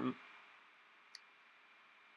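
Near silence between sentences of a man's voiceover, with the end of a spoken word at the start and one faint click about a second in.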